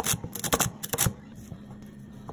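A chef's knife chopping through a bundle of celery sticks on a wooden cutting board: a quick run of crisp chops that stops a little past a second in.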